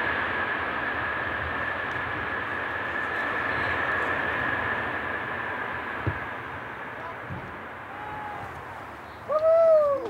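Boeing 747 jet engines running with a steady high whine during its landing rollout, the noise slowly fading. Near the end a loud swooping, arching tone cuts in suddenly.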